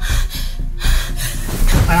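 A woman gasping in distress in her sleep, with film score music underneath.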